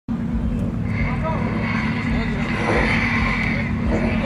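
A Subaru Impreza and a Fiat Coupé idling side by side on a drag-strip start line: a steady low engine rumble, with faint voices from the crowd behind it.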